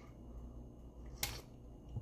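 Quiet room with one short, sharp click a little over a second in.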